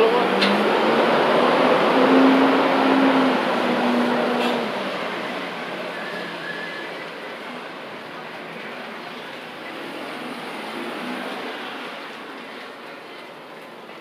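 A utility bucket truck driving away along a wet street: its engine hum and tyre noise are loudest about two seconds in, then fade steadily as it pulls off, leaving quieter street background.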